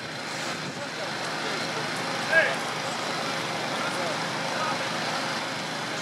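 Steady rushing noise of fire hoses spraying water onto a burning building, with a fire engine's pump running underneath. A brief shout rises above it a little over two seconds in.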